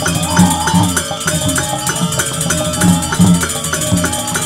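Balinese gamelan playing for a Barong dance: a dense ringing of tuned metal gongs and metallophones over low drum strokes, driven by an even pulse of metallic strikes about four a second.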